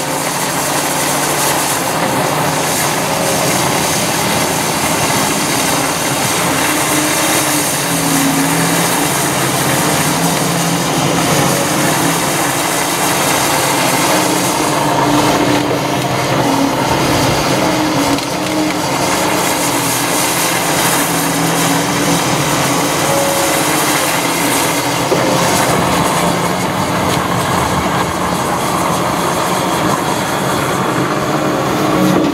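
Caterpillar 330F tracked excavator's diesel engine working under load, its pitch shifting up and down with the hydraulics, while its grapple tears out a thuja hedge, breaking branches and wood.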